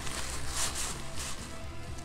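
Quiet background music with steady low sustained notes, and light rustling of a paper napkin being handled.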